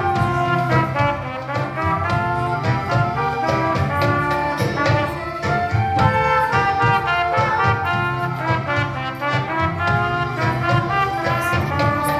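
A school ensemble of trumpets and recorders playing a tune together, with short notes changing quickly over a steady low pulse.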